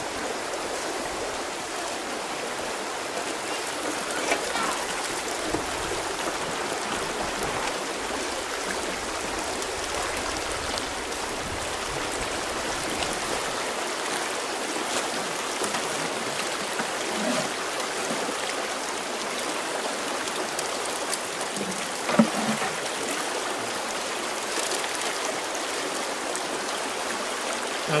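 Steady rush of water running down a small aluminium Gold Hog sluice and pouring off its end into a plastic tub, as gold concentrates are run through it. There is one brief knock about three quarters of the way through.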